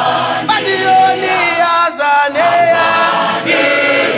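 A group of voices singing a song unaccompanied and in harmony, with notes held and sliding between phrases.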